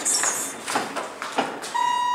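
An elevator's electronic arrival chime: one steady beep lasting about a second, starting near the end. Before it come a brief hiss and a few knocks.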